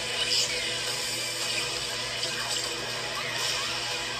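Film trailer soundtrack: music under a steady rushing, hissing noise.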